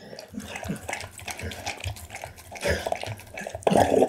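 Pit bull eating raw meat from a glass bowl up close: a steady run of wet chewing, smacking and licking sounds, loudest near the end.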